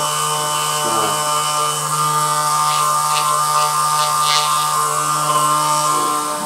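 Handheld percussion massage gun running steadily against a bare upper back, giving an even motor buzz.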